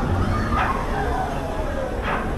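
Riders on the Monsunen swinging amusement ride giving short, falling shrieks, twice about a second and a half apart, over crowd chatter.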